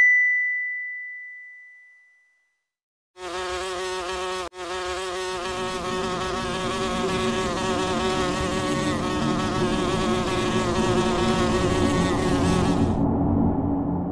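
Outro sound effects over the end card. A single high chime-like ding dies away over about two seconds. After a short silence, a steady buzzing drone starts, swells, and fades near the end.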